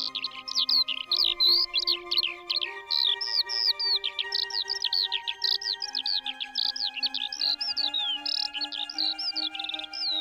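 Songbirds chirping busily, a rapid run of short, mostly falling whistled notes, over soft background music with long held notes.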